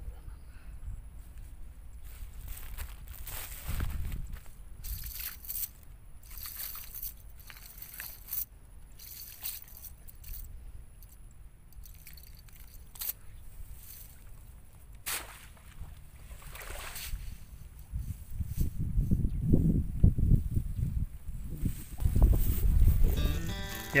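Wet nylon cast net being handled on mud and grass, with short rustles, scrapes and squelches as hands pick through the mesh. In the last few seconds come louder, low rumbling bumps of close handling.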